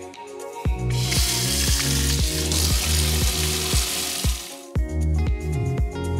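Kitchen faucet running water into a plastic spin-mop bucket in a stainless steel sink, a steady hiss for about four seconds, over background music with a steady beat.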